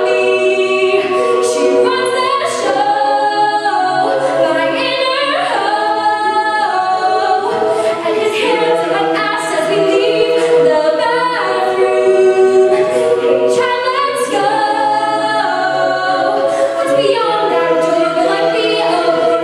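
A cappella group singing: a lead voice on a microphone over the ensemble's backing vocals in close chords, with no instruments.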